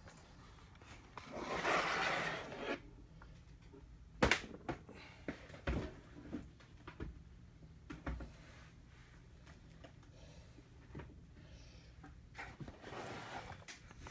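Hands opening a trading-card blaster box and its packs: a rustle of wrapping about a second in lasting a second or so, then scattered taps and clicks of cardboard and cards.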